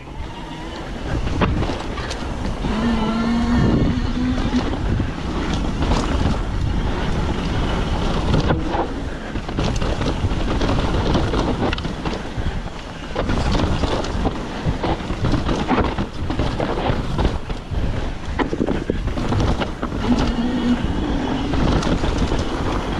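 Mountain bike running fast down a rough dirt trail: wind buffeting the microphone, with tyre noise and a constant clatter of knocks and rattles from the bike over the rough ground. A brief steady hum comes in a few seconds in and again near the end.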